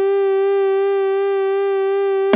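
A single long synthesizer note held steady at one pitch, bright with overtones and with a slight wobble, in an electronic music track.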